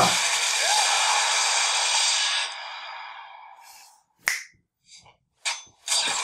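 A rushing hiss from a battle sound effect in the superhero show on screen, fading away over about four seconds, followed by a few short sharp clicks.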